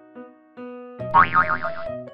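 Light children's background music with held notes. About a second in comes a cartoon boing sound effect, a quick wobbling pitch lasting just under a second, the loudest sound here.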